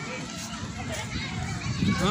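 Indistinct background voices of people and children playing, with no close voice standing out.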